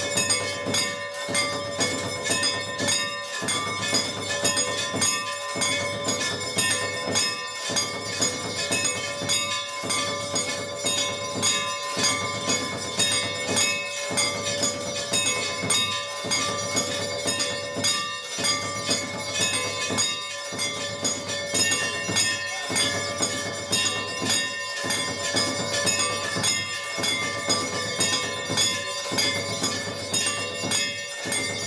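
Temple bells ringing continuously during an aarti, a dense metallic ringing with a regular pulse about every two seconds.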